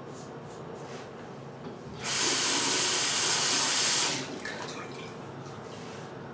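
Bathroom sink tap turned on and running for about two seconds, starting two seconds in and cutting off sharply. Before it, faint repeated scrapes of a single-edge safety razor drawn over lathered stubble.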